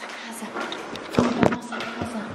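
A few sharp knocks and clicks about a second in, over a low steady hum, while the camera is carried through a hallway past doors.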